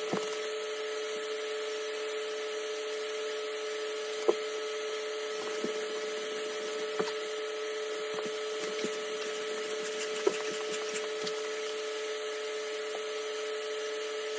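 A steady room hum with a constant tone and a light hiss, broken by a handful of short knocks and creaks from a person's hands and knees on a hardwood floor during push-ups.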